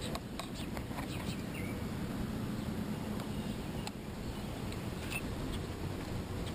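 Steady low hum and rumble aboard a bass boat on calm water, with scattered light clicks and ticks.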